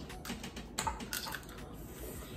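Faint, irregular clicks and crackles of cooked crab legs being pulled apart and eaten, a handful of short snaps of shell.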